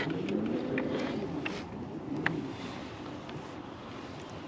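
Electric trolling motor on a fishing boat, running with a low whine that rises in pitch in the first second as it speeds up, then fades, with a brief lower hum a little past two seconds. A few light clicks sound over it.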